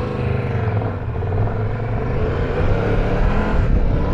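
Triumph Tiger 1200 Rally Pro's three-cylinder engine running steadily under way off-road, with a rush of wind and trail noise over it, growing slightly louder toward the end.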